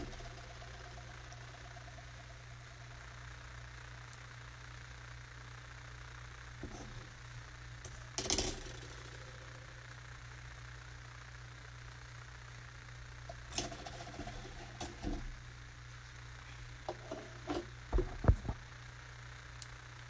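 A steady low hum under faint hiss, broken by scattered knocks and rustles of a phone being handled, the loudest a couple of low thumps near the end.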